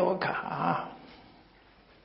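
A man's voice speaking into a microphone, a drawn-out phrase that trails off about a second in, then quiet room tone.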